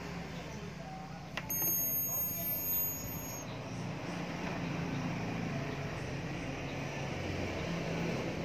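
Acetylene torch burning with a steady hiss, its flame lit for brazing. A single sharp click comes about a second and a half in.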